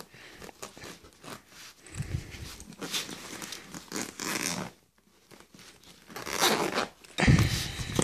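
Zipper of a padded nylon meal-bag compartment being pulled open around its edge in a series of short rasping strokes, with a brief pause about halfway. Near the end comes a dull thump.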